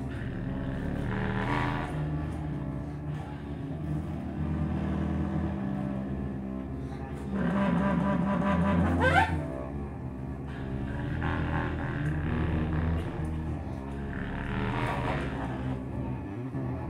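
Free-improvised duo of bowed cello and contrabass clarinet: low, held, drone-like tones that shift in pitch. The music gets louder from about seven and a half seconds in and peaks with a fast rising glide up high just after nine seconds.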